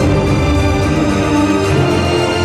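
Instrumental music playing steadily, with sustained, layered tones: accompaniment music for an acrobatic gymnastics routine.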